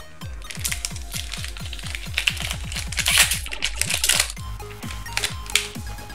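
Background music with a fast, steady beat, with the crinkling and crackling of a foil trading-card booster pack being torn open and its cards pulled out.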